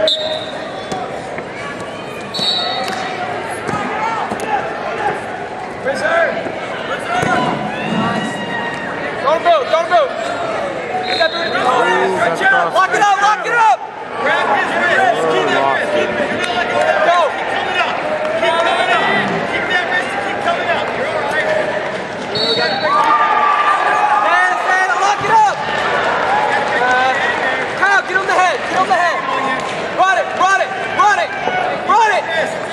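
Several voices of coaches and spectators shouting over one another in a large, echoing arena during a wrestling bout, with a few short, high squeaks of wrestling shoes on the mat.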